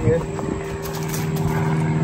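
An engine drones steadily as an even, low hum.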